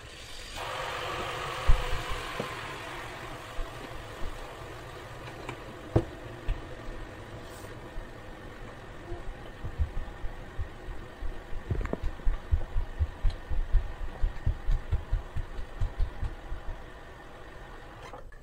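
Kitchen tap running into a stainless-steel sink, filling it with dish water: a steady rush of water that starts about half a second in and slowly grows quieter as the sink fills. From about ten seconds in, a quick run of low thumps from dancing feet on the floor.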